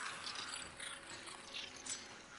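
Film sound effect of a sorcerer's cane draining a man's life energy: an irregular, shifting noise with a short burst near the end.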